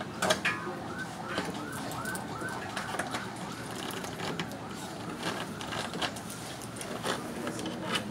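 An electronic siren yelping, quick rising-and-falling tones about three times a second that fade out a couple of seconds in, with scattered light knocks and clicks throughout.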